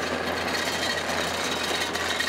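Compact track loader's diesel engine running as the machine drives past close by on its rubber tracks: a steady engine hum under a thin high whine.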